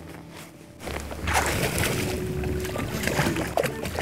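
Water splashing and sloshing as a hooked striped bass thrashes at the surface beside the boat, starting about a second in and going on irregularly.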